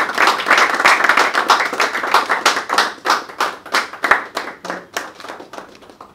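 A small group of people applauding by hand, a dense burst of clapping that thins to scattered claps and dies away near the end.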